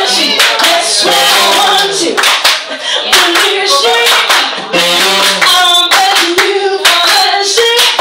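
A live jazz-soul band with a woman singing, hand claps keeping time over the music.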